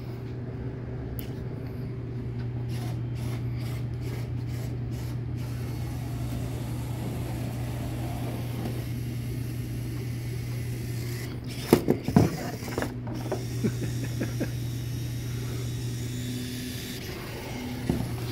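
Small wheeled hobby robot's drive motors and servos running as it drives along a plastic folding table pushing a cup, over a steady low hum. A few sharp knocks come about twelve seconds in, with faint clicks in the first few seconds.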